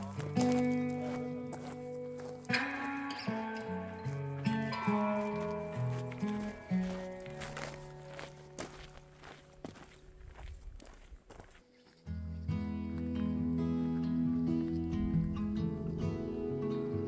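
Background music: a melody of plucked-sounding notes that fades down, then a fuller, louder passage comes in about three quarters of the way through.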